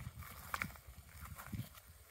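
Faint footsteps in dry grass: a few soft, uneven thuds as a person steps up and kneels down, with one sharper click about half a second in.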